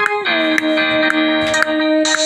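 Pop song track playing back: a sustained, synth-like lead that slides down in pitch about a quarter second in, over a steady beat of sharp ticks about twice a second.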